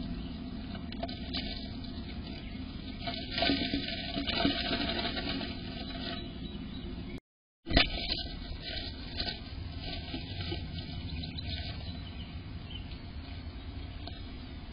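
Tree swallow moving around in a wooden nest box: rustling of the dry-grass nest and scratches against the box, over a steady background hiss. The sound cuts out completely for a moment just after the midpoint and comes back with a sharp knock.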